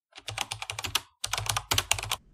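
Computer-keyboard typing sound effect timed to a title typing itself out on screen: two quick runs of keystrokes with a brief pause between them.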